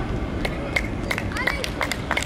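Outdoor football pitch ambience: scattered short shouts and calls from players across the field over a steady low background rumble.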